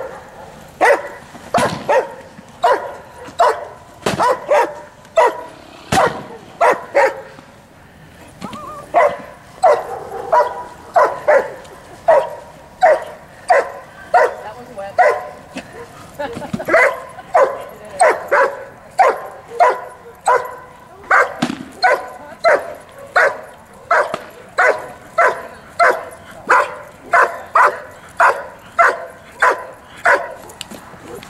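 A dog barking over and over while held on a leash, at about two barks a second, with a short lull about eight seconds in.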